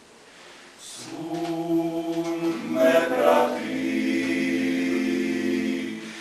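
Male klapa ensemble singing unaccompanied in close harmony. After a brief pause at the start, the voices come back in about a second in and move into a long held chord.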